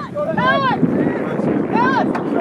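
Two drawn-out shouts from sideline spectators, one about half a second in and one near the end, over a steady rush of wind on the microphone.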